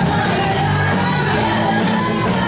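Loud worship music with a congregation singing along, some voices shouting out.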